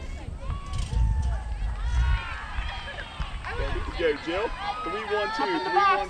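Softball players' voices calling out and chattering across the field, overlapping and without clear words, getting busier about halfway through. A low rumble on the microphone in the first couple of seconds.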